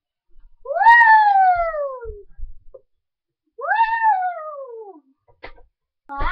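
Cat meowing twice, two long meows about three seconds apart, each rising quickly and then sliding down in pitch.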